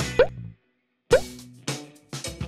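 Background music with cartoon-like plop sound effects, each a quick upward pitch glide. One comes at the start; after a half-second of dead silence a second comes about a second in, followed by another hit near the end.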